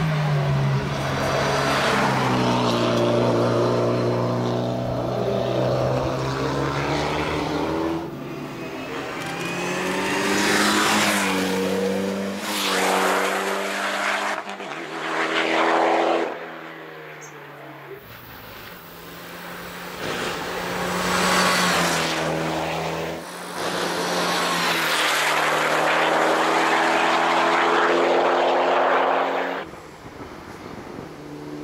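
Mitsubishi Lancer Evo X hill-climb race cars at full throttle, their turbocharged four-cylinder engines revving up and dropping back through gear changes as they pass. Several passes follow one another, each starting abruptly.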